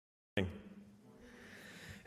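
Sound cuts in suddenly on a brief clipped fragment of a man's voice that fades within half a second, followed by faint room tone with a steady low hum.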